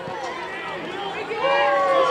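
Spectators in the stands shouting encouragement at a track race, with scattered voices, then one long drawn-out yell starting past halfway.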